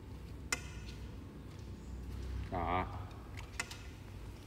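Metal chopsticks clinking against a ceramic plate: two short, ringing ticks, about half a second in and again near the end.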